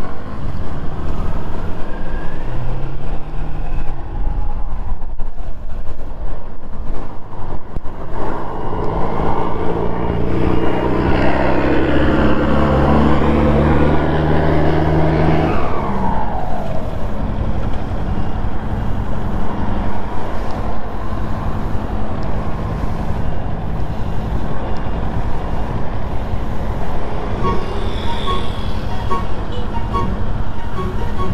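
Kawasaki Z400 parallel-twin engine heard from the rider's seat. It runs hard under throttle with rushing noise for several seconds, then its pitch falls away as the bike slows, and it settles into a steady low hum near a standstill.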